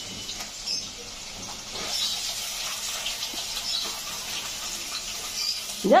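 Water running from a tap, a steady hiss that grows a little louder about two seconds in.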